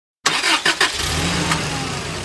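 A car engine starting: a few quick cranking pulses, then it catches and runs steadily.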